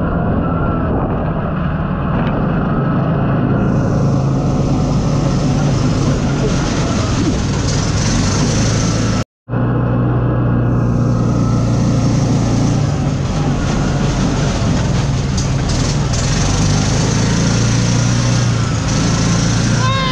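Open off-road buggy's engine running steadily as it drives along a dirt track, a low hum under a broad hiss of wind and tyre noise. The sound drops out completely for a moment about nine seconds in.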